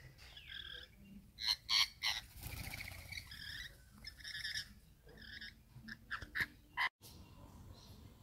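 Rainbow lorikeets calling in short, harsh screeches and chatter, a string of separate bursts with the loudest ones about one and a half to two seconds in.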